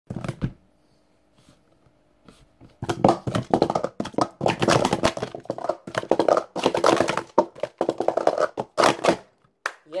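Plastic speed-stacking cups clattering in a fast, unbroken run of clacks for about six and a half seconds as a full cycle is stacked up and down, after a few knocks and a quiet pause. A single slap on the timer pad follows near the end.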